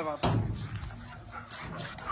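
A German Shepherd giving one short, deep bark about a quarter of a second in.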